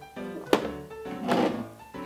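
Soft background music with steady sustained notes, and one sharp knock about half a second in: a small glass shot glass set down on the table. A brief noisier sound follows just after a second in.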